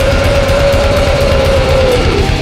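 Symphonic black metal band playing live at full volume: a fast, dense drum pulse and distorted guitars under one long held high note that bends down at the end.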